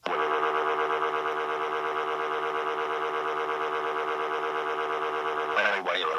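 A long, loud scream held at one flat, unwavering pitch, in the style of a text-to-speech voice drawing out 'aaaah'. It starts abruptly and cuts off about five and a half seconds in.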